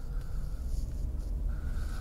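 Mercedes-Benz R129 500SL V8 and road noise heard from inside the cabin while driving: a steady low rumble, with a faint thin whine that comes and goes.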